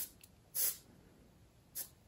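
Hot soldering iron tip wiped across a damp sponge: two short hisses about a second apart as the water flashes to steam on the tip, steam-cleaning it.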